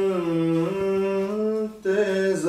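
A man's solo voice reciting a naat, a devotional poem praising the Prophet, unaccompanied. He draws out long, slowly gliding melodic notes, with a brief break near the end.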